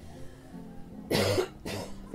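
Soft background music holding steady low tones, with a person coughing twice, briefly, a little past the middle.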